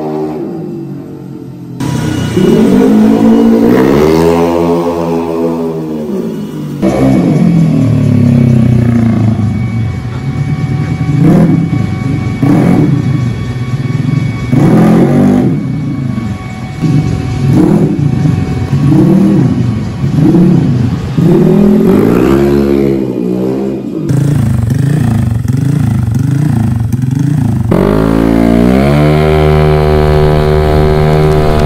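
Honda Vario 125 scooter's single-cylinder engine being revved in repeated short blips, each one rising and falling in pitch, about one every second or so, in a string of clips that cut one into the next. Near the end it holds a steady high rev under way.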